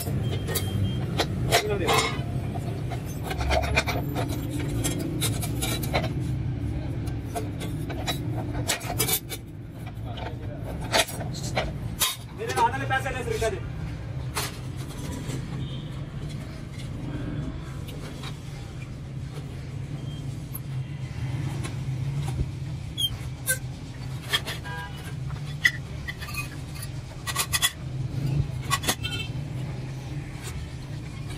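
Sheet steel being cut by hand, first on a lever bench shear and then with long-handled hand shears, giving a string of short sharp metal clicks and snips over a steady low hum.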